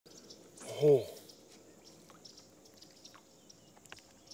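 A man's short, surprised "Oh" just under a second in, then faint outdoor quiet broken by a few light clicks.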